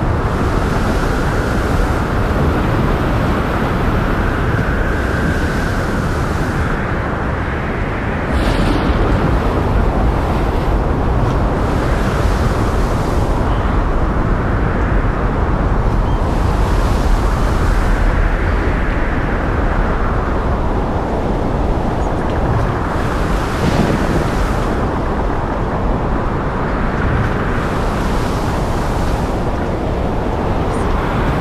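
Wind and rough sea heard from a ship: a steady rush of wind and breaking waves over a deep rumble, surging and easing every few seconds.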